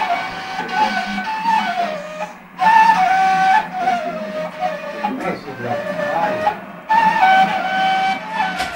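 A long end-blown flute played solo: three melodic phrases, each starting on a high note and stepping down, with short breath pauses between them.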